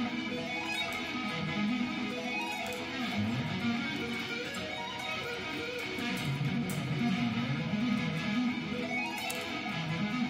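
Electric guitar played fast, picking arpeggios of major and minor seventh chords, the notes running up and down in quick repeated sweeps.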